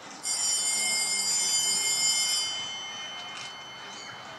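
A show-jumping ring's electronic start bell sounds once, a steady high ringing tone lasting about two seconds and cutting off sharply. It is the judges' signal that the rider may begin the round.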